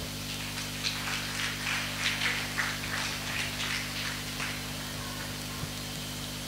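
Steady low electrical hum from the hall's microphone and sound system, with faint scattered higher sounds over it.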